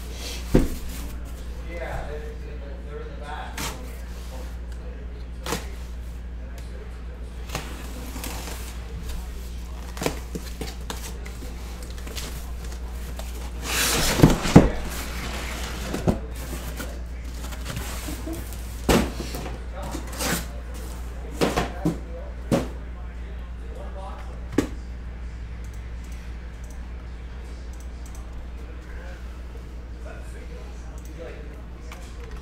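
Cardboard shipping case being opened and sealed, shrink-wrapped hobby boxes handled and set down. Scattered knocks and thumps, with a louder burst of scraping noise about fourteen seconds in, over a steady low hum.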